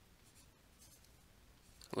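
Faint, intermittent scratching of a stylus writing on a pen tablet.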